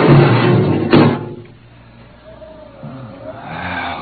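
Radio-drama sound effect of a spaceship airlock opening: a loud hiss of rushing air over a low hum, ending in a sharp clunk about a second in. Faint wavering tones follow.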